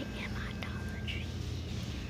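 A girl whispering close to the microphone, with a steady low hum underneath.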